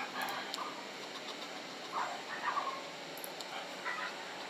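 Short vocal sounds from a shepherd-type dog, pitched up by sped-up playback, coming in three brief bunches: near the start, about halfway, and at the end.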